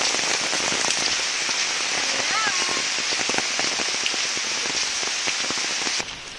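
Heavy tropical downpour: steady rain with many sharp drop hits close by. A brief voice sounds about two and a half seconds in.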